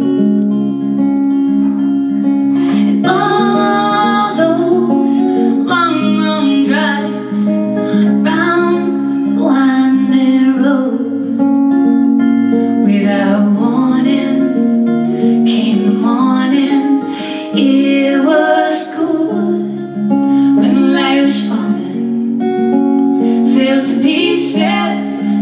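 Acoustic guitar strumming a steady rhythm under a woman's singing voice in a live folk song.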